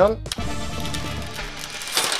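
Old tint film being peeled off a car's side-window glass by hand: a steady crackly peeling noise that grows stronger toward the end, under background music.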